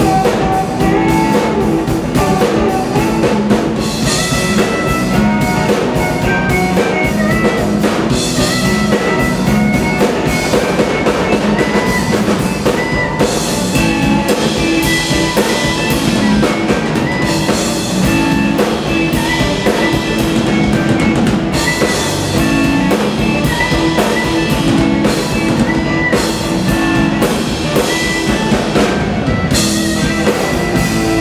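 Live blues band playing an instrumental passage: drum kit, electric guitar and electric bass, with a harmonica played cupped against a microphone.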